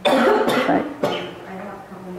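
A person coughing hard, a run of loud coughs in the first second or so, then quieter voice sounds.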